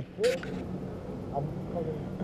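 A short spoken word just after the start, then faint, scattered low voice sounds over a steady low hum.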